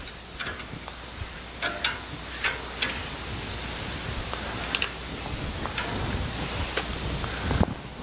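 Cooking oil sizzling on a hot grill grate as an oil-soaked paper towel is wiped across it: a steady hiss with scattered sharp crackles and pops.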